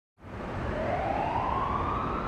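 A siren sound effect, wailing and rising slowly in pitch over a low rumble, coming in from silence right at the start as the opening of a hip-hop theme track.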